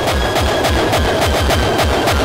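Hardcore techno music: a fast, steady kick-drum beat, about four kicks a second, with sharp ticking percussion above it.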